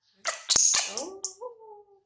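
Baby macaque monkey giving a loud, harsh squeal with two sharp clicks in it, then a thinner drawn-out cry that bends and slowly falls in pitch.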